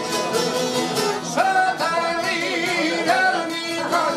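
Albanian folk song: fast, steady plucking on long-necked lutes throughout, with a man's voice coming in about a second and a half in and holding a wavering, ornamented note before breaking off near the end.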